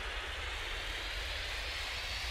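Steady rushing noise over a deep rumble, a jet-like whoosh sound effect that goes with an animated title transition.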